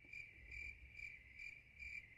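Crickets-chirping sound effect: a faint, steady high trill pulsing about two to three times a second, the comic cue for a joke met with silence.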